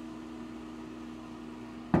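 Steady low electrical-type hum with two even tones over faint hiss. The soft-close cabinet door shuts without any audible knock or click.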